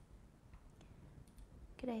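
Faint, scattered clicks of a computer mouse while choosing an entry from a drop-down list on screen, with a short phrase of speech at the very end.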